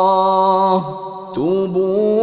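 A man's voice chanting Quran verses in a slow, melodic recitation style. He holds a long steady note, breaks off a little under a second in for a short breath, then begins the next held note with an upward slide about a second and a half in.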